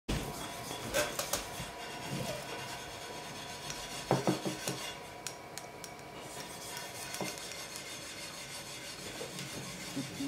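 A few light knocks and clatter of handling on a workbench, the last about seven seconds in, then a pottery banding wheel turning with a soft, steady rubbing.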